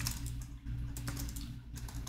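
Typing on a computer keyboard: a run of irregular key clicks over a low steady hum.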